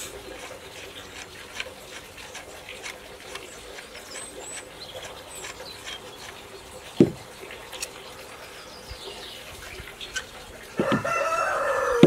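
Small clicks and a single sharp knock about seven seconds in as a fishing rod holder clamp is handled on a canoe gunwale. Near the end, a rooster crows once, one long call, over faint songbird chirps.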